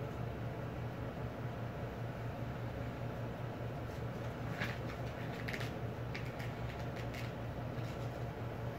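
A steady low hum, with a few brief rustles of a hand rubbing a cat's fur and foreleg in the second half.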